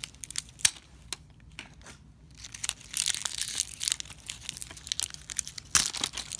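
Plastic packaging wrap crinkling and tearing as it is cut and pulled off a plastic toy container, with scattered clicks and crackles. There is a denser run of crinkling about halfway through and a sharp snap near the end.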